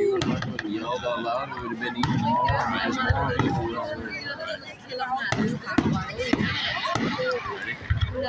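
Voices of a crowd talking, with the sharp bangs of a fireworks display breaking through several times; the loudest bang comes a little past the middle.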